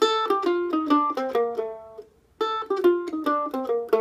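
F-style mandolin picked in single notes: a descending B-flat major scale run, played twice with a short break between. The notes are played straight, in even eighths without swing.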